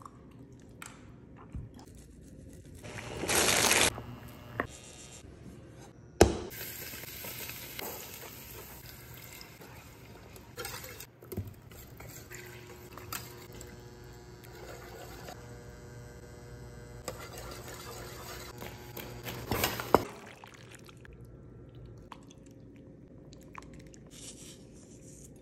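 Kitchen cooking sounds while making cheese sauce: a wire whisk stirring milk and shredded cheddar in a stainless steel pan, with a hiss of cooking, a loud brief rush of noise about three seconds in, and a couple of sharp clinks on the pan.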